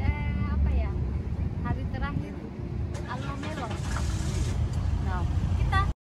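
A river ferry's engine runs with a steady low hum while people talk over it, and the sound cuts off suddenly at the end.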